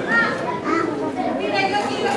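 Indistinct audience chatter in a hall, with children's high-pitched voices.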